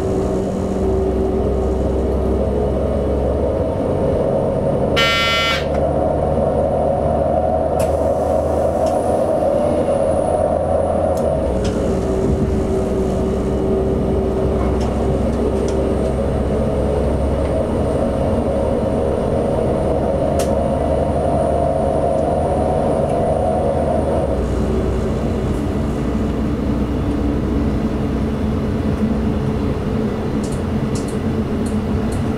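ČD class 842 diesel railcar running along the line, heard from the driver's cab: a steady engine drone mixed with wheel and rail noise. A brief high-pitched tone sounds about five seconds in, and the engine note drops near the end.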